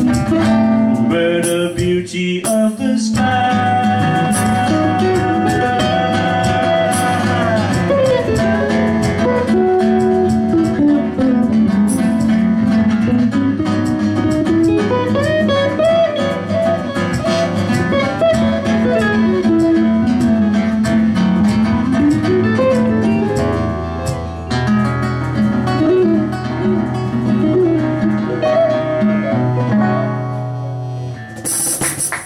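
Live small-band music: electric guitar, acoustic guitar and cajon. A lead line winds and slides up and down in pitch over strummed chords and a steady cajon beat.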